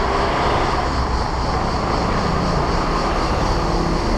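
Steady engine and road noise of a car driving slowly, recorded from a camera mounted on the car.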